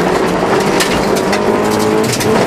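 Honda Civic 1.5's four-cylinder engine pulling hard under acceleration on a rally stage, heard from inside the cabin, with frequent sharp clicks and knocks from the rough road surface.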